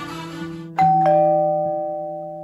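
Background music fades out, then a two-note chime strikes just under a second in: a higher note followed quickly by a lower one, ding-dong, both ringing on and slowly dying away.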